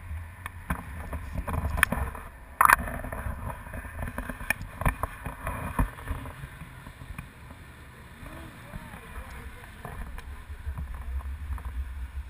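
Wind rushing over an action camera's microphone in paragliding flight, a steady low rumble, with scattered clicks and a sharp knock a little over two seconds in as the camera mount is handled.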